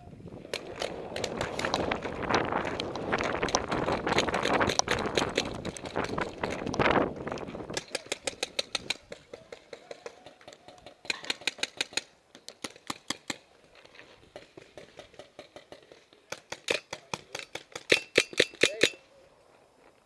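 Paintball markers firing in rapid strings of sharp pops, several bursts with short gaps between them; the loudest string comes near the end. For the first eight seconds a loud rushing noise covers the shots.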